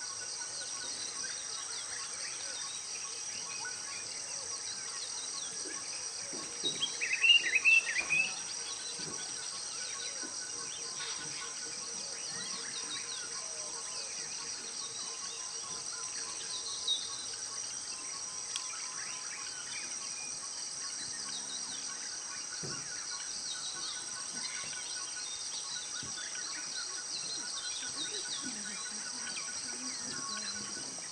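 Steady high-pitched insect chorus with scattered faint bird calls. A short run of loud whistled bird calls comes about seven seconds in.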